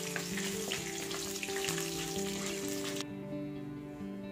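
Hot oil sizzling and crackling around dried red chillies and curry leaves as a tempering is fried and stirred in a kadai. The sizzle cuts off suddenly about three seconds in.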